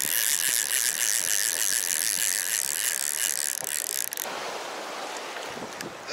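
Spinning fishing reel cranked quickly to retrieve line: a steady, fine, high-pitched whirr that stops abruptly about four seconds in.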